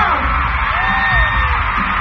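Loud dance music with a heavy pulsing bass beat played over a hall's speakers, with a crowd of fans screaming over it.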